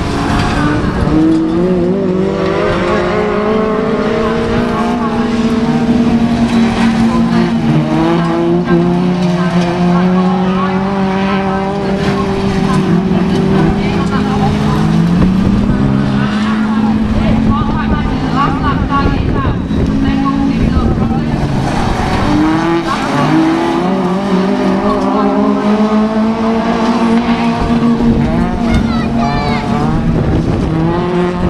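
Several autograss racing cars' engines revving hard on a dirt track, overlapping tones climbing in pitch and dropping back as the drivers accelerate, change gear and lift off.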